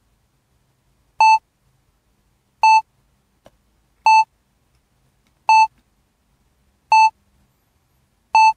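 A short electronic beep at one steady pitch, repeating evenly about every second and a half, six times, with silence in between.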